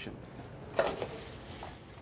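Flour-dredged lamb shanks sizzling as they sear in hot oil in a pan, with one short louder burst a little under a second in.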